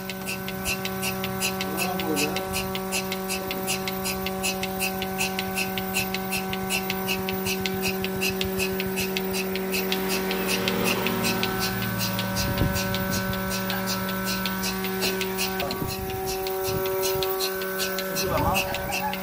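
Mini milking machine running with its teat cups on a cow's udder: a steady hum from the vacuum pump motor under fast, regular clicking from the pulsator.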